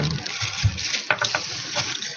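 Plastic bag rustling and crinkling under moving hands: a steady rustle with a few sharp crackles around a second in and again near the end.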